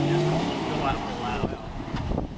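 Jeep CJ engine revving as it accelerates, its pitch climbing for the first half second and then easing off about halfway through, with low rumbling near the end.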